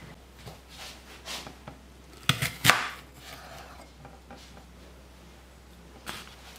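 A knife cutting up an apple on a hard surface: scattered sharp cuts and knocks, the two loudest close together a little over two seconds in.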